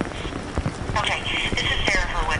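A telephone caller's voice over the phone line, starting about halfway through, with crackling clicks on the line throughout.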